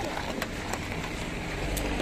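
Low wind rumble on the microphone with a few light clicks and knocks as a child climbs into a car through its open door.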